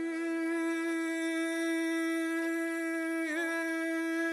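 Rababa, a single-string bowed fiddle, holding one long steady note, with a brief wavering about three seconds in.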